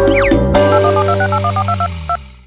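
Smartphone keypad touch tones: a quick, even run of about a dozen short beeps as a phone number is dialled, starting about half a second in, over background music.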